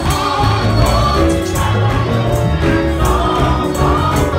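Gospel choir singing, led by a male singer on a microphone, over keyboard and bass with steady percussion strikes a few times a second.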